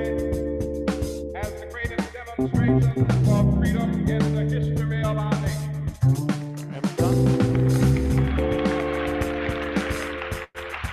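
Electronic music played from an Ableton Live set: held chords over a bass line, with short percussive hits. It thins out briefly about six seconds in, and a hiss-like wash fills the last couple of seconds.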